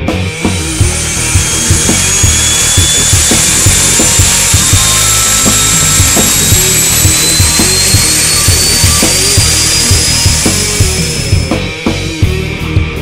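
Turboprop aircraft engine running with its propeller turning: a loud, steady rush with a high whine that slowly rises in pitch. It cuts in just after the start and fades near the end, over background music with a steady beat.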